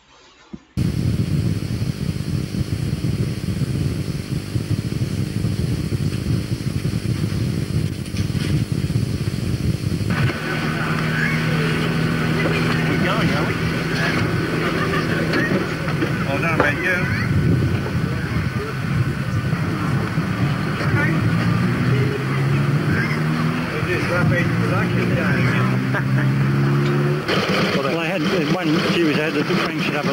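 A vintage motorcycle engine running with a steady note, its pitch rising in steps about two-thirds of the way through as it is revved. Low rumbling noise fills the first third, and people talk in the background.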